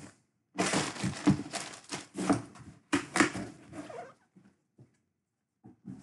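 Plastic and cardboard jersey packaging being handled: about three seconds of dense rustling and crinkling, then a few light taps.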